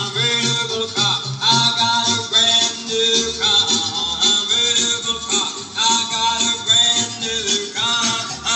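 A song played from a vinyl LP at 33 rpm on an overhauled Dual 1019 turntable: singing over an instrumental backing with a regular beat.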